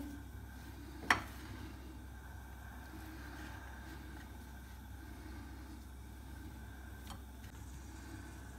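Fish being pressed and turned in a dry cornmeal and flour coating in a glass bowl, a faint rustle over a steady low hum, with one sharp click about a second in.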